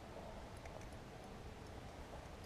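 Faint steady background noise with a few faint, scattered ticks.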